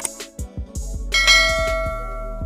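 Subscribe-button animation sound effects: a few quick clicks, then about a second in, a bright bell chime that keeps ringing.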